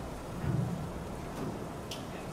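Steady background noise from the room with a dull low thump about half a second in and a faint click near the end.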